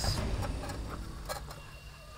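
Glass jar being lifted off a trapped tarantula hawk under mesh netting: a couple of light glass clicks, about half a second and a second and a half in, with the netting rustling.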